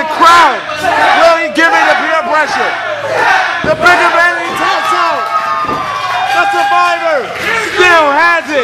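Spectators shouting and yelling, several raised voices overlapping, some held in long falling yells, as a figure-four leglock submission is applied.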